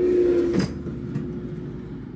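Air fryer humming steadily, cut off by a single clunk about half a second in, after which only quieter background noise remains.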